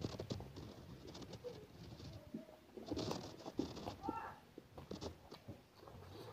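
Close-up eating sounds: chewing with wet mouth clicks and smacks while eating chicken and rice by hand. A couple of short pitched sounds, one about two seconds in and one about four seconds in, sound like brief coos or hums.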